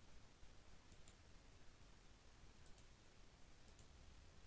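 Near silence: faint hiss with a few faint computer mouse clicks, about a second in and twice more a little before the end.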